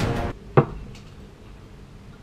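Background music cuts off about a third of a second in; a moment later comes a single short knock of an object on the wooden workbench, followed by quiet room tone.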